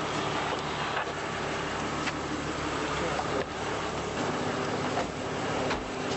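Steady street and car-engine noise, with rustling and a few sharp clicks close by. A low steady hum comes in about four seconds in.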